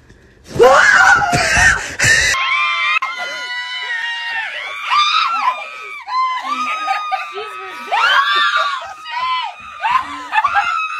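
A loud, distorted scream about half a second in, lasting nearly two seconds. Then, after an abrupt cut, high-pitched shrieking and squealing voices, rising and falling, with louder peaks around five and eight seconds in.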